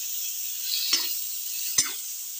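Chopped tomatoes and onions sizzling in hot oil in a metal wok, with a spatula stirring and knocking against the pan twice.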